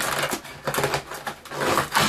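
Stiff cardboard advent-calendar box being pried and pulled open by hand: irregular rustling, crinkling and scraping of card.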